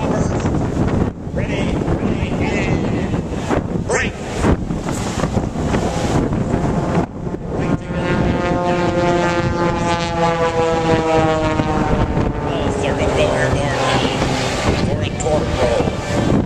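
Propeller-driven aerobatic airplanes' engines droning overhead, their pitch slowly falling through the middle of the stretch, under heavy wind buffeting on the microphone.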